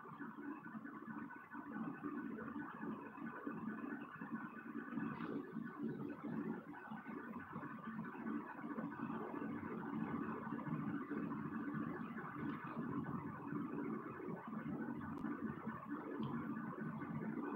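A steady mechanical hum, unchanging throughout.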